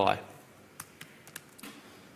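A few faint, irregularly spaced keystrokes on a computer keyboard.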